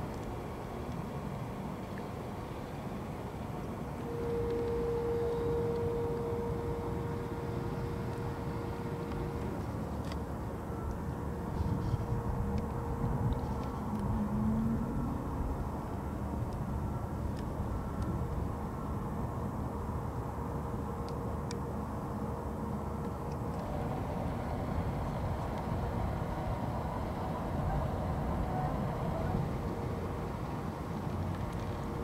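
Steady low rumble of vehicle engines, with a thin steady whine that is loudest for about five seconds from about four seconds in, and a brief wavering tone in the middle.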